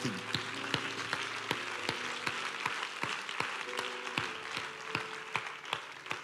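Audience applauding: a dense patter of hand claps with some louder single claps standing out, over soft background music holding long sustained notes.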